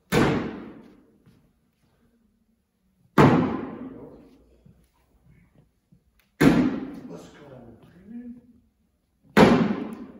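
Cornhole bean bags landing on a wooden cornhole board, four heavy thuds about three seconds apart, each ringing on in the reverberant gym hall.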